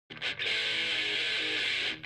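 Intro music on electric guitar: a short opening note, then a held chord that stops just before the end.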